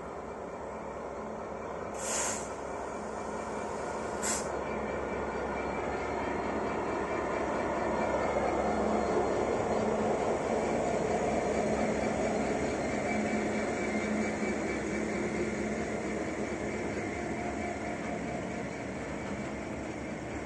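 GB Railfreight Class 66 diesel locomotive hauling a container freight train past, its engine growing louder to a peak about halfway through as it goes by, followed by the container wagons rolling along the track. Two short high-pitched bursts come about two and four seconds in.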